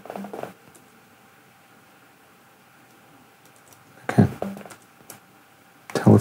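Mouse clicks and short, low electronic beeps from a basic one-oscillator software synth, near the start and again about four seconds in, over quiet room tone with a faint steady thin tone.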